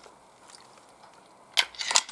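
Quiet outdoor background, then about one and a half seconds in a single sharp mechanical click, followed by a short clatter of handling noise.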